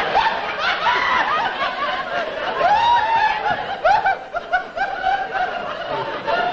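A man laughing in a long fit of high-pitched, giggling peals, one after another, with other laughter under it.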